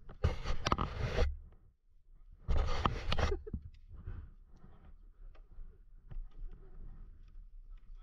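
Two loud, roughly one-second bursts of rubbing noise close to the helmet camera's microphone, typical of a gloved hand brushing against the camera, followed by faint scattered rustles.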